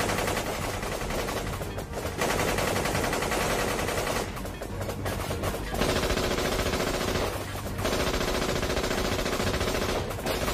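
Rapid automatic gunfire in long strings of shots, broken by three brief lulls, about two, four and a half, and seven and a half seconds in. A music score runs underneath.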